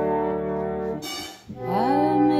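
A 120-year-old pump reed organ sounds a held chord that breaks off about a second in. After a brief gap, the next chord comes in, its notes sliding up into pitch as the reeds speak.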